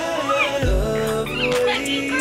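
Background music: a beat with deep bass notes that slide down in pitch and a high melody that glides up and down.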